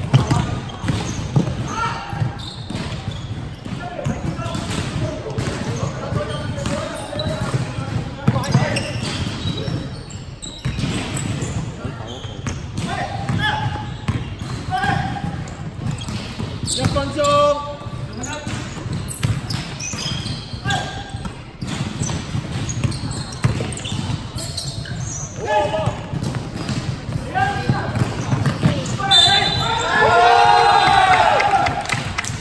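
Basketball game play in a large, echoing indoor hall: a basketball bouncing on the hardwood court, with players calling out. Voices get louder near the end.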